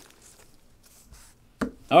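A quiet stretch, then about one and a half seconds in a single sharp tap as a card is set down on the tabletop.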